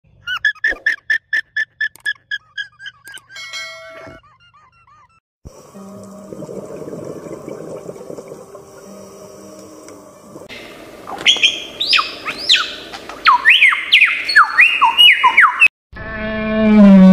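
Separate animal-sound clips in turn. First an alpaca's quick run of short, high-pitched pulsed calls, about five a second. Then a murky steady hum with faint tones under a jellyfish shot, and then loud whistled song with rising and falling sweeps, as from a lyrebird.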